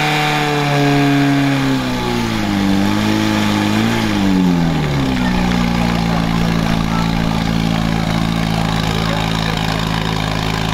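Fire pump engine running at high revs; over about four seconds the revs fall with a waver, dropping sharply about five seconds in, then it runs on steadily at a lower speed.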